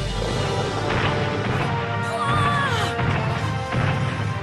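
Cartoon sound effect of a Tyrannosaurus rex's heavy footfalls, thudding about once a second over background music.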